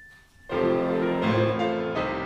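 Grand piano playing, coming in abruptly about half a second in with several notes sounding at once and new notes entering every fraction of a second.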